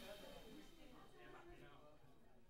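Faint, indistinct voices of people talking across the room, almost at the level of room tone.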